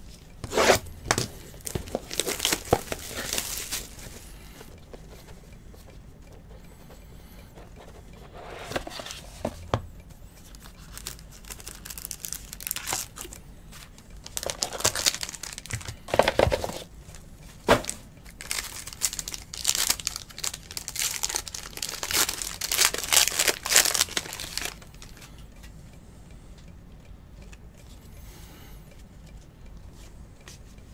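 Trading-card box and foil pack wrappers being torn open and crinkled: 2017-18 Panini Court Kings basketball packs. The tearing and rustling come in several bursts with quiet gaps between them, and the last burst ends about 25 seconds in.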